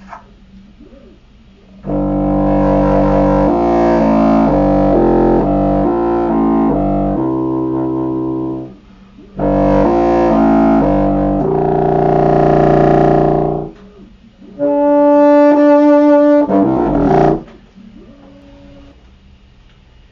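Contrabassoon played in three short phrases of low reed notes. The first two move through several notes. The last is a brighter held note that ends with a quick drop in pitch.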